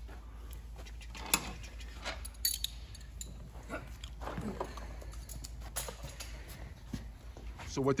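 Scattered sharp clinks of hand tools and metal hardware during ATV assembly work, a few separate knocks over several seconds, with faint voices in the background.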